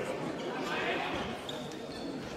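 Voices and murmur echoing in a large sports hall, with a brief high squeak near the end.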